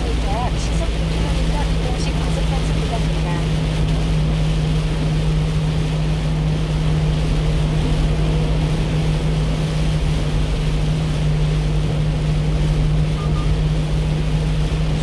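Steady drone of a 1-ton box truck cruising on a highway, heard from inside the cab: an even engine hum with low road rumble and the hiss of tyres on a rain-soaked road.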